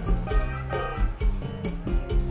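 Live band playing an instrumental passage: electric guitar and bass over a steady drum beat.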